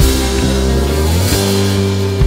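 Instrumental passage of a rock song: electric guitar over fretless bass and drums, with no singing.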